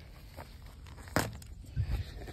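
Footsteps on dry pine-needle ground, with one sharp knock about a second in and a duller thump near the end.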